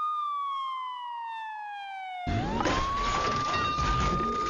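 Ambulance siren wailing: one high tone that slides slowly down in pitch for about two seconds. Then loud rumbling noise starts suddenly as the siren swings back up to its high pitch and holds.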